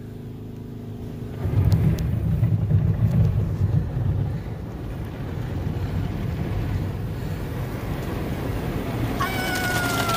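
Automatic car wash heard from inside the car's cabin: a low steady hum, then, from about a second and a half in, a loud low rumble as the spinning cloth brushes and water sweep over the car's body and windows. Near the end a woman lets out a long, high "Ahhh" that slowly falls in pitch.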